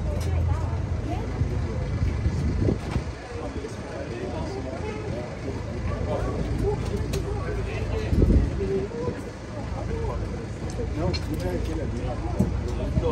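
Mixed chatter of a small group of people close by, over the low, steady idle of a coach's engine. A loud low thump about eight seconds in.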